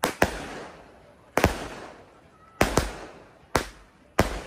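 Aerial fireworks going off in quick succession: about seven sharp bangs, several in close pairs, each with an echoing tail.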